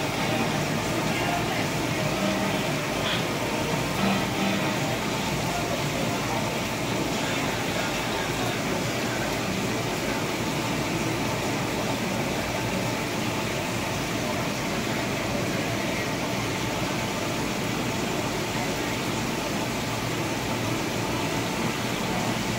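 Steady hiss and hum of aquarium air pumps and bubbling sponge filters, with a faint murmur of voices in the background.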